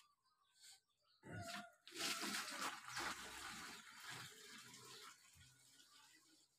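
Water pouring and splashing from a plastic bucket into a plastic watering can: a rushing splash that starts about two seconds in and tapers off toward the end.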